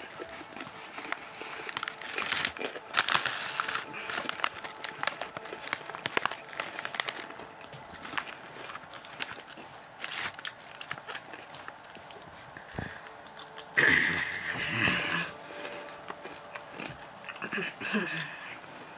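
Crunching and chewing of spicy rolled tortilla chips (Red Hot Takis) close to the microphone, a steady run of short crackly crunches, heaviest a couple of seconds in, with some rustling of the snack bag.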